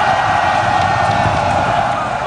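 Large crowd cheering, a loud, steady din of many voices.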